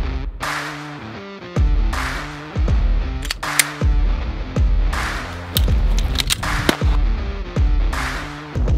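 Electronic intro music with a beat of deep bass hits, falling pitch sweeps and sharp noisy bursts.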